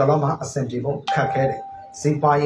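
A man talking, with a single steady electronic tone, like a chime or beep, coming in about halfway through and held for about a second under the voice.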